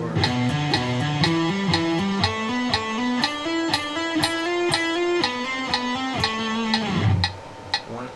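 Electric guitar playing a legato hammer-on exercise, notes stepping up and down in an even rhythm, over steady metronome clicks. It ends on a held note that fades out about seven seconds in.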